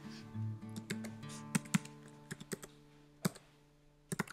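Keystrokes on a computer keyboard: irregular clicks as an email address is typed, thinning out in the second half, over a faint steady background tone.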